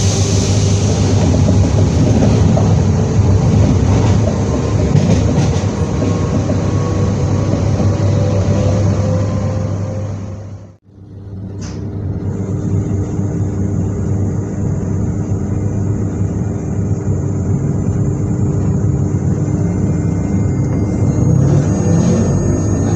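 Z2N double-deck electric multiple unit Z 20834 running: a steady low hum with a faint whine above it that slides slightly in pitch. About eleven seconds in, the sound fades out to nothing and straight back in, to a steadier set of humming tones.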